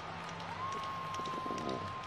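A single steady tone, sliding up into pitch about half a second in and then held, over a low murmur of arena background noise.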